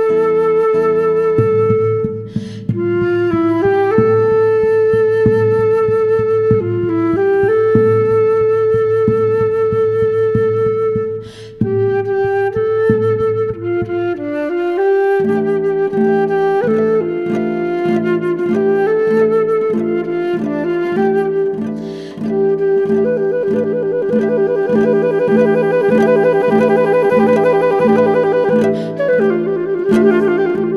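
Flute and guitar duo playing: the flute holds long melody notes over guitar chords. About halfway through, the guitar changes to a steady repeated pulsing accompaniment.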